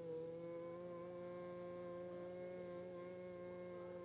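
A sustained keyboard chord held steady, several notes sounding together as a soft background pad.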